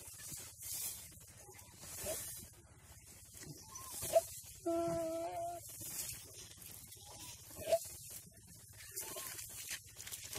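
A deer being eaten alive by a Komodo dragon gives one short, steady bleating distress call about five seconds in, lasting under a second. A couple of sharp clicks sound around it.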